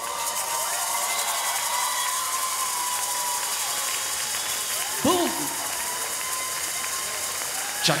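Audience applauding steadily as the jive music ends, with a few voices calling out over the clapping.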